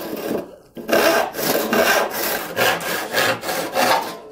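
Freshly sharpened and set crosscut handsaw cutting through a wooden board with quick, even push-and-pull strokes, about two to three a second. After a brief start and pause it settles into the rhythm about a second in. The fresh teeth cut easily, "like butter".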